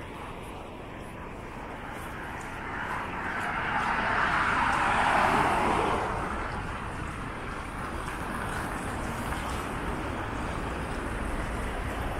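Street traffic, with one car passing close by: its tyre and engine noise swells to a peak about five seconds in and then fades into the steady rumble of city traffic.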